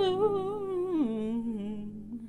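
A singer humming a wordless vocal riff: a wavering held note that drops to a lower note about a second in and trails off near the end.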